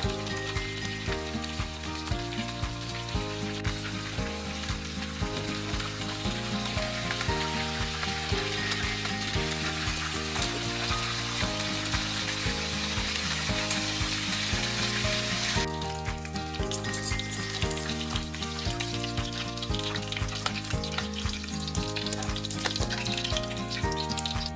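Whole tilapia frying in hot oil in a wok: a steady sizzle that grows stronger toward the middle and drops off abruptly about two-thirds of the way through, over background music.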